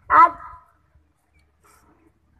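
A boy's voice calling out one loud, emphatic word into a microphone, followed by a pause with only a faint low hum.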